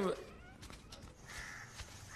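A crow cawing faintly, about a second and a half in.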